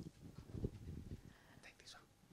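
Faint, indistinct speech and whispering in the room, with a few soft low thumps.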